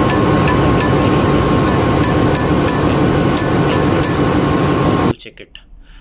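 Ball-head hammer tapping on a generator engine's counterweight hydraulic nuts: a dozen or so light metallic clinks, irregular and a few a second, as a hammer test to check that the nuts have not loosened. Behind them is a loud steady machinery noise, which cuts off suddenly about five seconds in.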